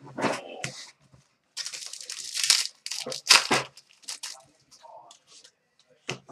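A foil trading-card pack wrapper being torn open and crinkled by hand, in irregular rustling bursts that are loudest from about a second and a half in to about four seconds in, with lighter handling of the cards and wrapper around them.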